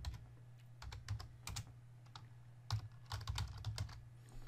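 Typing on a computer keyboard: irregular keystroke clicks in short runs, with gaps between words.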